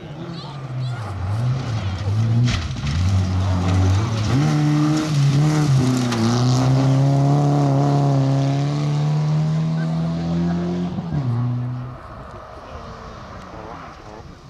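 BMW E36 3 Series rally car engine at hard throttle on a gravel stage. The engine note dips about a second in, then climbs and holds high for several seconds, with loose gravel hissing under the tyres. The sound drops away sharply about twelve seconds in.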